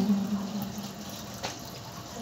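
A long held 'amen' note, sung by a woman into a microphone, fades out in the first half-second. A faint, even background hiss follows, with one light click about one and a half seconds in.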